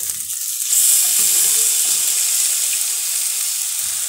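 Rice frying in hot fat in a pot, sizzling steadily; a little under a second in the sizzle jumps louder as cooked fava beans are tipped into the pot.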